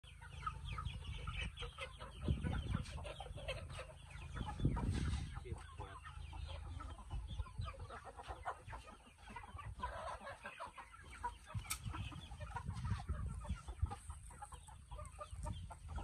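Burmese game chickens, roosters and hens, clucking in wire cages, with many short, scattered calls. Two brief low thumps stand out in the first five seconds.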